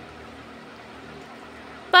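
Steady faint hiss of room tone or recording noise, with no distinct sound event, before a woman's voice starts right at the end.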